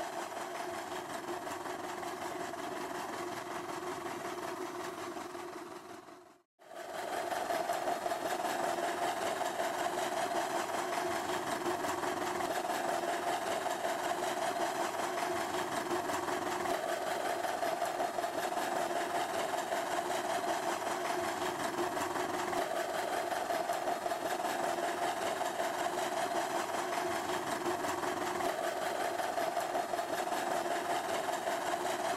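Engine of a small vintage tractor running steadily under load as it pulls a plow. About six seconds in the sound briefly cuts out, then a steady engine sound runs on, a little louder.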